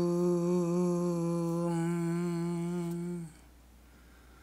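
A man's voice chanting one long, steady note with a slight waver. It stops about three seconds in.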